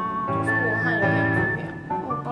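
Background music: a whistle-like lead melody in long held notes, the second one wavering slowly, over a soft sustained accompaniment.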